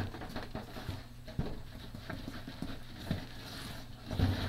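A spatula folding a thick meringue and flour mixture in a stainless steel bowl: soft, irregular scraping with light knocks of the spatula against the bowl.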